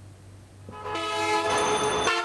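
A road vehicle's horn sounding one long, steady blast of several tones together, starting a little over half a second in and growing louder.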